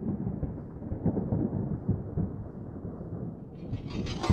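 Rumbling thunder sound effect, the low tail of a crash, slowly fading. A brighter sound swells in just before the end.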